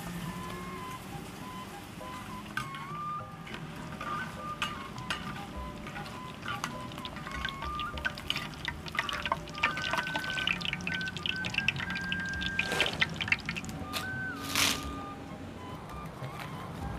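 Krupuk crackers frying in hot oil in a clay wok, crackling. In the second half they are lifted out in a wire strainer and oil drips back into the wok, with a thicker run of crackles. Background music plays throughout.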